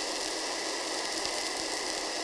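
Steady background hiss at an even level, with a few faint light clicks in the second half.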